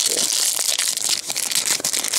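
Foil wrapper of a Pokémon TCG booster pack crinkling as it is handled and opened, a dense crackling rustle with many small crackles.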